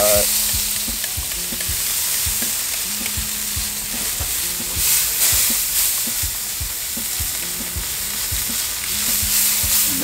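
Steady sizzling hiss from the open Big Green Egg as the smoked beef ribs cook. Short spray-bottle squirts mist the meat, the brightest about five seconds in and again near the end.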